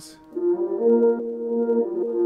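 A chord of sustained notes from the Output Arcade software instrument's Aura kit, played from a MIDI keyboard. The notes come in about a third of a second in, one part drops out around the middle, and the chord is released just before the end.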